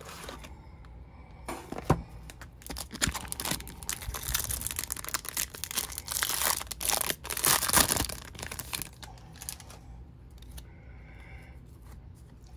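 A 2023 Topps Series 2 baseball card retail pack's wrapper being crinkled and torn open by hand: several seconds of crinkling and tearing with sharp crackles, busiest in the middle.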